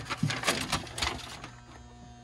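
A sheet of paper rustling and crinkling as it is pulled out and opened up: a quick flurry of crackles that thins out after about a second.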